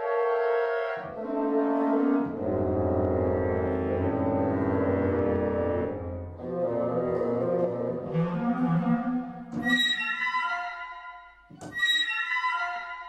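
Sonokinetic Espressivo orchestral sample library playing aleatoric orchestral phrases triggered from a MIDI keyboard: layered sustained chords, with a deep part swelling in about a second in and holding for several seconds. A brighter, higher phrase comes in near the end and fades out.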